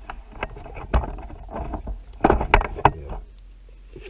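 Knife cutting and scraping through tough possum hide and flesh on a board during skinning: irregular scrapes, clicks and knocks, busiest a little past the middle.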